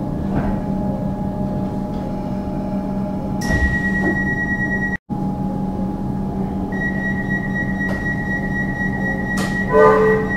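Inside an Alstom Comeng electric suburban train as it draws slowly into a platform and stops: a steady low hum from the train, with a thin high whine coming in twice. The sound cuts out for an instant about halfway, and a short run of pitched tones sounds near the end.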